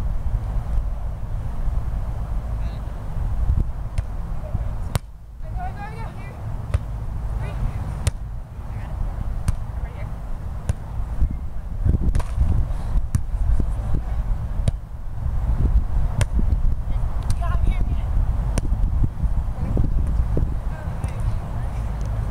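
Sharp slaps of hands striking a volleyball during a rally, coming every second or few seconds, over a steady low rumble with faint voices in the background.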